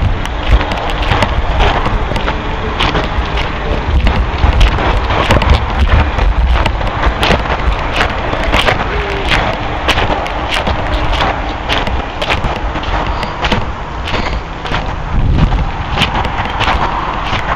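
Footsteps crunching on a gravel path, heard as irregular clicks several times a second, over a low rumble of wind buffeting the microphone.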